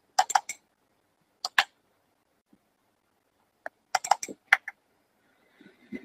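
Scattered keystrokes and clicks on a computer keyboard, in small clusters: a few near the start, two about a second and a half in, and a quick run around four seconds in.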